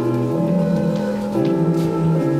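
Grand piano playing slow sustained chords, the harmony shifting every half second to a second.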